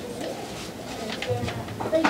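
A lull with a bird calling quietly in the background and low voices.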